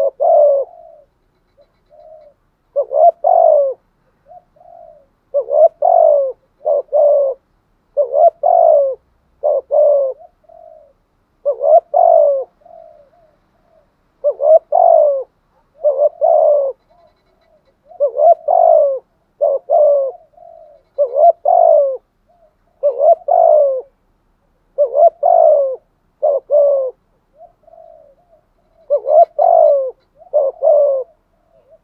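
Spotted dove cooing over and over: a phrase of two or three coo notes about every two to three seconds, with softer notes between.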